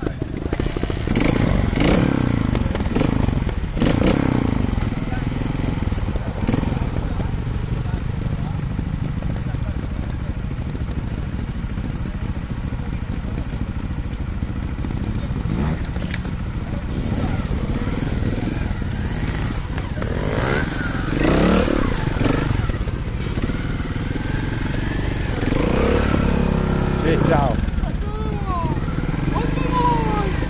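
Trials motorcycle engines running steadily, revved up a few times in the second half, with people's voices over them.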